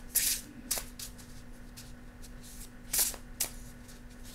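A gilt-edged oracle card deck being shuffled by hand: short swishes of the cards sliding, one just after the start and a couple about three seconds in, over a faint steady hum.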